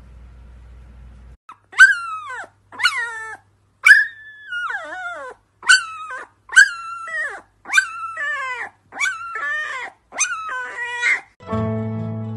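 Siberian husky puppy howling in about eight short cries, each starting high and sliding down in pitch. Strummed guitar music starts near the end.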